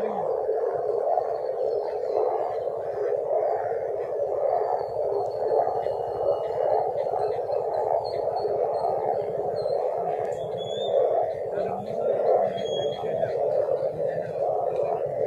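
A continuous droning noise that villagers cannot explain and say comes from the ground, steady throughout with faint high chirps above it.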